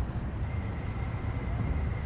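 Steady low outdoor rumble with an uneven, fluttering texture, and a faint steady high whine from about half a second in.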